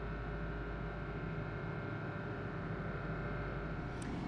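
Steady drone of marine engines and machinery, with a constant low hum and a faint steady whine over a wash of wind and sea noise. It comes from an offshore supply vessel holding station alongside a drilling rig in rough sea.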